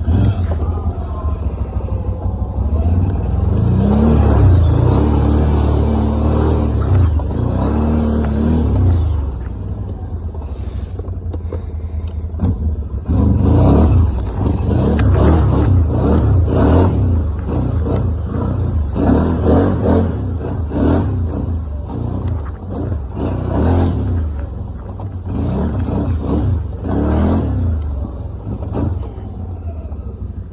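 Can-Am 1000 ATV's V-twin engine running under way, its pitch rising and falling with the throttle: one long smooth rev in the first third, a brief easing off, then many quick repeated surges of throttle.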